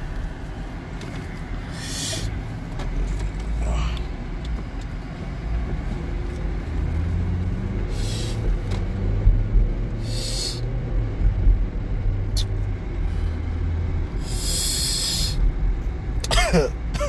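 Road noise inside a moving car: a steady low rumble of engine and tyres, with short hissing rushes every few seconds.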